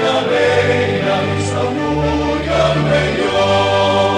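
Slow sacred choral music: a choir singing held chords over a sustained bass, the harmony shifting every second or so.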